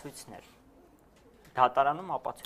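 A man's voice trails off, there is a pause of about a second, and then his speech starts again about one and a half seconds in.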